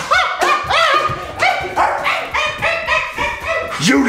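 A quick run of dog-like barks and yips, each short call rising and falling in pitch, turning into higher, steadier yelps.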